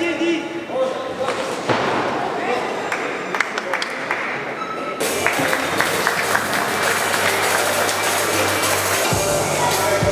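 Voices and a few sharp thuds in a large boxing hall. About halfway through, music with a steady low bass comes in suddenly and carries on.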